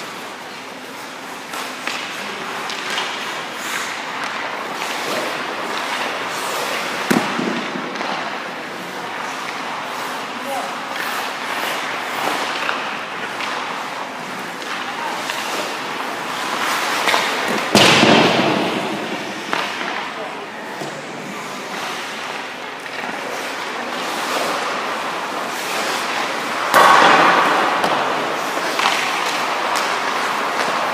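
Ice-rink goalie drill sounds: skate blades scraping the ice, with small clicks and knocks of stick and puck. There is a sharp knock about a quarter of the way in and two louder, longer scraping bursts later on, one a little past halfway and one near the end.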